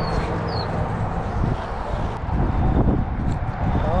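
Wind buffeting the microphone, a steady low rumble, with a few short high chirps near the start.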